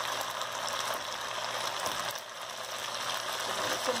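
Chicken pieces and freshly added diced onion sizzling in a hot pan, with a spatula stirring and scraping through them.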